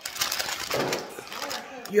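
Plastic cookie package crinkling as it is picked up and handled, with a woman starting to speak near the end.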